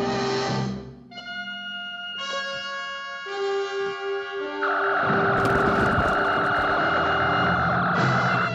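Dramatic score holds sustained notes. About halfway through, a loud steady buzzing whine from sci-fi laser pistols firing comes in over it and runs to the end.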